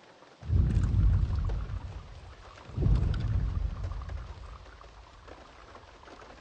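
Two deep, low rumbles, the first about half a second in and the second nearly three seconds in, each fading away over a faint steady hiss.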